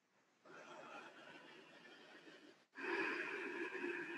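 Near silence, then about three seconds in a long audible breath from a person.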